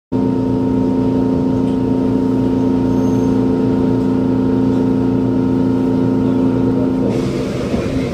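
Steady electrical hum from a JR Kyushu 817 series electric train, heard inside the carriage: several held tones over a low rumble, changing to a rougher, noisier sound about seven seconds in as the train gets under way.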